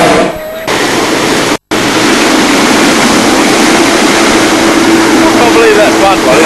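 Hot-air balloon burner firing in a short, loud roar at the start. After a brief cut-out, a steady, loud rushing noise follows, with a constant low drone running under it.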